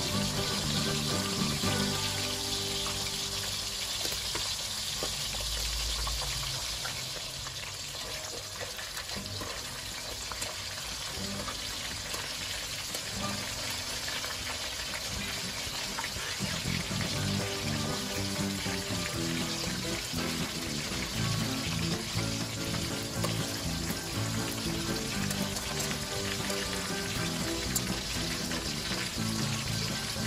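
Fish pieces shallow-frying in hot oil in a wok, a steady sizzle throughout.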